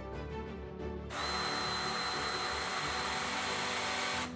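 The electro-hydraulic PACE1 Press's battery-driven pump motor starts about a second in and runs steadily for about three seconds, with a steady high whine, driving the piston forward.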